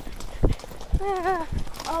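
A pony's hooves striking a gravel track at a walk, a few dull thuds about half a second apart.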